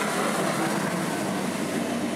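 A loud, steady rush of noise, swelling just before and fading just after, laid over sustained ambient intro music.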